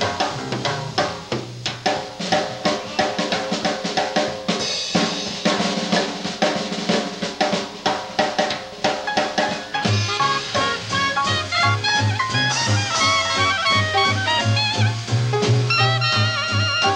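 Small swing jazz band playing live. For the first ten seconds the drum kit is to the fore, with busy snare and cymbal strokes over guitar and piano chords; then the string bass comes back in under wavering clarinet and soprano saxophone lines.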